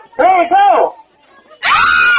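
Two short shouted calls, then about a second and a half in a loud, high-pitched burst of screaming and shrieking from several people breaks out and keeps going.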